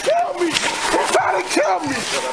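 A man yelling and crying out in short, loud, repeated cries of distress while being physically restrained.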